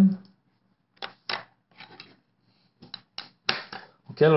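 About eight irregular clicks and taps from a computer mouse and keyboard, spread unevenly over a few seconds with short silences between.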